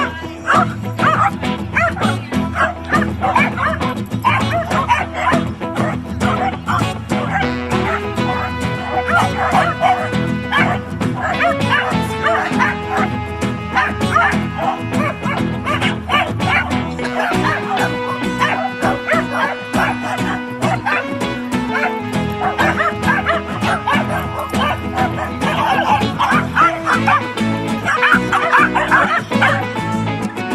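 A pack of Welsh corgis barking and yipping on and off, over steady background music.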